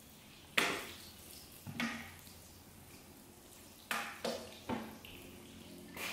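Water pouring from a plastic watering can onto garden soil, with about five short, sharp knocks and splashes scattered through it.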